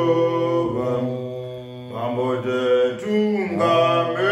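Two men singing a Shona gospel song unaccompanied, in long held notes that shift slowly in pitch, with a brief dip about halfway through.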